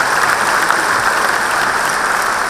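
A large audience applauding: dense clapping that breaks out all at once and keeps up steadily.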